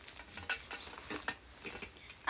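Crinkling and rustling of gift packaging being handled and opened by hand, a run of irregular soft crackles.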